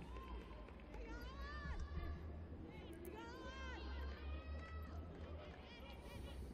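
Faint, high-pitched shouts and calls of footballers on the pitch, several separate cries rising and falling in pitch, over a low steady hum.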